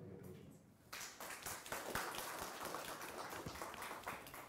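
An audience applauding, a dense patter of clapping that starts about a second in.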